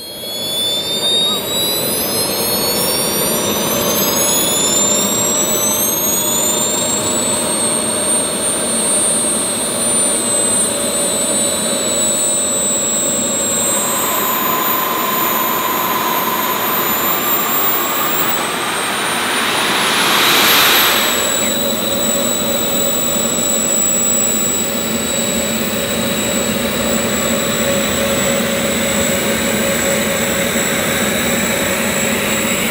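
Model jet turbines of a 1:13-scale RC Airbus A380 running on the ground, several high whines climbing in pitch over the first eight seconds as they spool up, then holding steady over a rushing exhaust noise. About twenty seconds in, one turbine briefly revs up and back down.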